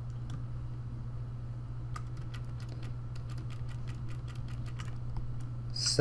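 Light clicks of a computer mouse and keyboard, scattered at first and coming quickly from about two to five seconds in, over a steady low hum.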